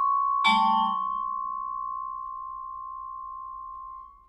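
Vibraphone played with yarn mallets: a chord is struck about half a second in, and its high note rings on, slowly dying away for over three seconds while the lower notes fade sooner.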